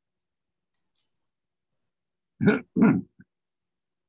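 A man's short laugh: two loud bursts about two and a half seconds in, with a small trailing sound just after.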